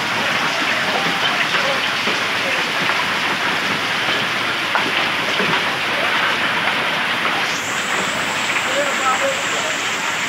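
Heavy rain and hail falling on a street: a steady dense hiss with many small sharp ticks of hailstones and drops striking the ground and roofs.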